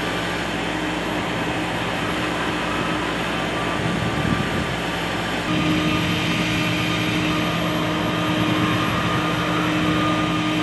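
Steady machinery hum holding several steady tones, stepping up in level about halfway through.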